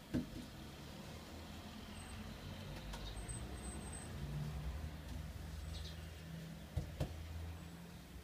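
Low hum of a motor vehicle's engine running nearby, growing louder over several seconds and fading near the end. A sharp knock comes just after the start and two more come about seven seconds in, with a few faint bird chirps.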